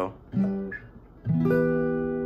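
Acoustic guitar: a chord struck about a third of a second in that quickly fades, then a louder chord struck about 1.3 s in and left ringing.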